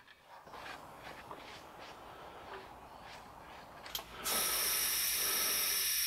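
Faint small handling clicks, then about four seconds in a steady hiss of compressed air feeding through an air-chuck test fitting into a 2-inch poly water line as it is pressurised for a leak test, with a faint fast low throb beneath it.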